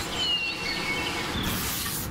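Birds chirping a few short whistled notes over steady outdoor background noise, with a brief hiss near the end.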